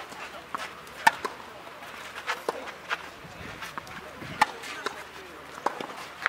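Tennis balls struck by racquets during a rally on a clay court: sharp pops, the two loudest about a second in and a little past four seconds, with fainter knocks in between.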